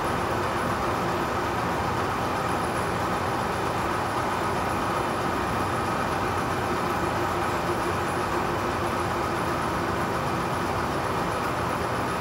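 Manual lathe running steadily under power through a threading pass, the single-point tool cutting a thread on a turned metal cap.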